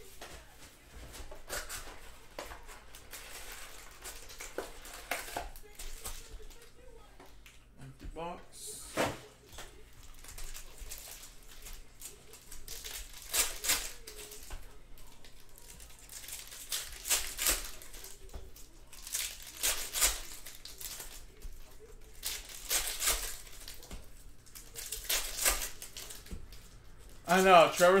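Plastic wrap and foil trading-card packs being torn open and crinkled by hand, in short bursts every few seconds.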